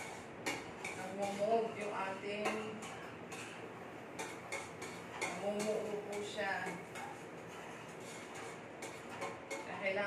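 A metal utensil clinking and scraping against a small metal saucepan as a sauce is stirred, in irregular quick ticks.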